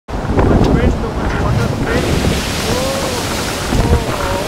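Strong wind and heavy sea: a loud, steady rush of wind and breaking waves, with a wavering whistle of wind rising and falling in pitch in the second half.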